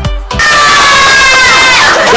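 A group of children shouting and cheering together, starting about half a second in, with their long shouts sliding down in pitch at the end.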